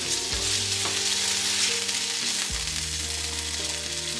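Sliced smoked sausage sizzling in a hot nonstick frying pan while a plastic spatula scoops the browned pieces out, with soft background music of held low notes underneath.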